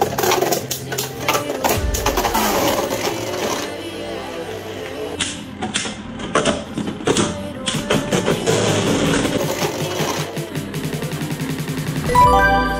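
Two Beyblade Burst spinning tops, Xcalibur against Phoenix, clashing in a plastic stadium: a run of sharp clacks and clattering hits. Near the end there is a fast, even rattle as one top wobbles. Background music plays throughout.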